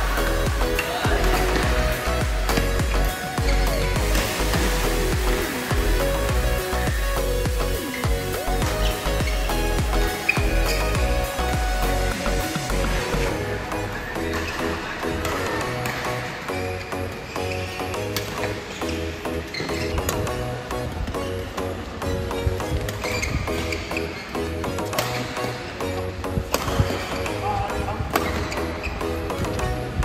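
Background music with a steady bass pulse, its sound shifting about halfway through. Sharp clicks of rackets striking a shuttlecock come through underneath.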